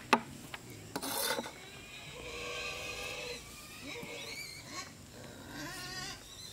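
A cleaver strikes a plastic cutting board once, then scrapes across it in a long, pitched rasp while sliced red chillies are gathered off the board.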